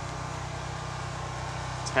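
A steady low machine hum made of several even, unchanging tones, with no other event until a voice begins at the very end.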